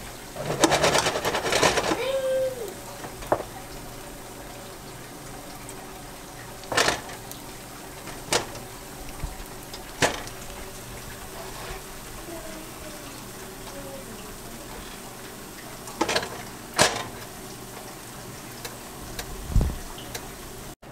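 Malawax (thin Somali crepe) cooking in a nonstick frying pan with a faint steady sizzle, a busy clatter in the first two seconds, and then a handful of sharp single knocks of utensils against the cookware.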